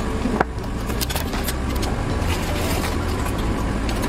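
A knife clicking and scraping against a plastic cutting board and a ceramic bowl as chopped tomatoes are pushed off the board. Under it runs a steady low rumble, which is the loudest sound throughout.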